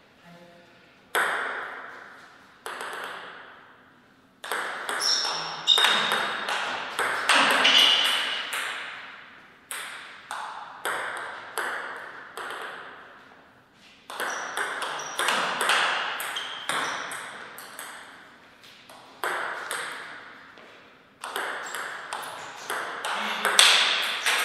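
Table tennis ball being hit back and forth with bats and bouncing on the table through several rallies, each contact a sharp click with a short ring that dies away, in runs broken by pauses between points.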